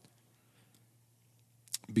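A pause in a man's speech through a handheld microphone: faint room tone with a low steady hum, a few short clicks near the end, and his voice starting again just as it ends.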